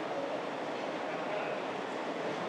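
Steady, even background noise of a large, occupied chamber hall, with no distinct voice or event standing out.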